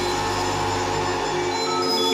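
Improvised electronic music from eurorack modular synthesizers: layered, sustained drone tones held steady, with a low hum underneath that cuts out about three-quarters of the way through.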